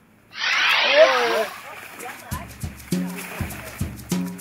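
Loud splashing of muddy water for about a second as a fish is grabbed by hand inside a fish trap. Background music comes in about two seconds in.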